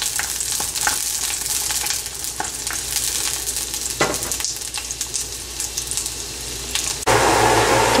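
Garlic cloves frying in hot ghee in a nonstick pan: a steady sizzle, with a few sharp clicks and scrapes of a spatula stirring them. About a second before the end the sound cuts abruptly to a louder background with a low hum.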